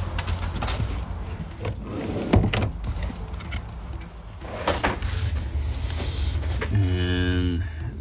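Rustling and knocks of a phone and work light being handled inside a pickup's cabin over a low steady hum, with a short steady buzzing tone near the end.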